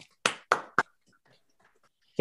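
Three quick hand claps, followed by a few faint scattered clicks.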